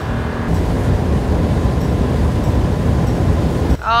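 Steady low rumble and rushing noise of a boat under way: outboard motor running, with wind and water noise.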